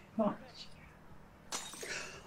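A sudden crash about a second and a half in, a breaking, shattering sound that fades away: the chimney that anchors a zip line giving way.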